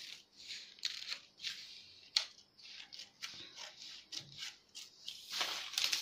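Scissors snipping through newspaper, about two short cuts a second along a curved pattern line, then a longer rustle of paper near the end as the cut piece is handled.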